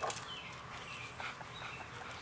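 An Airedale terrier leaping at and grabbing a stick hanging in a tree: one sharp knock right at the start, then a few faint, short, high chirps.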